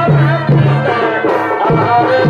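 Chhau dance accompaniment: a wavering wind-instrument melody over a regular low drum beat of about two strokes a second.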